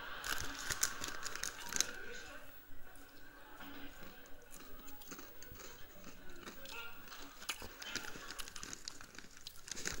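A man gasping and spluttering without words, his mouth burning from Tabasco, in sitcom audio heard through a TV's speaker. Sharp crackles and clicks run all through it.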